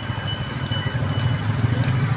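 A motor vehicle's engine running steadily at low speed, a continuous low rumble.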